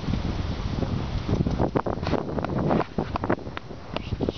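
Wind buffeting the camera microphone, a steady low rumble with a run of sharper gusts in the middle.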